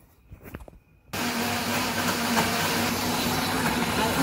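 Kenwood electric blender switched on about a second in, its motor starting suddenly and then running steadily as it blends milk and banana into a milkshake.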